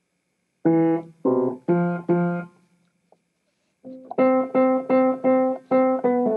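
Notes played on a Rudolph Wurlitzer piano. There are four notes at different pitches, then a pause of about a second, then the same note repeated about six times, roughly three a second.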